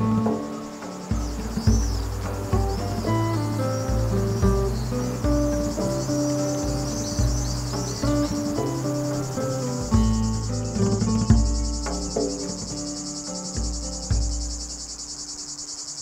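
Gentle background music of plucked notes over a bass line, with a steady high-pitched chirring of insects such as crickets running underneath.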